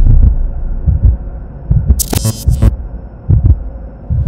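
Intro music for a title card: deep, throbbing bass pulses with a short bright, crackling hit about halfway through.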